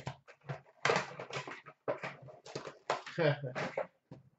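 Foil hockey card pack wrappers being torn open and crinkled by hand, in irregular rustling bursts. A brief voice-like sound comes about three seconds in.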